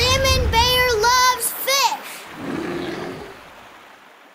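Short sung jingle in a high, child-like voice: a handful of held notes over about two seconds, the last one dipping and rising in pitch. A softer wash of sound follows and fades away.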